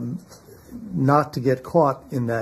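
A man speaking, with a brief pause about a quarter of a second in before he goes on talking.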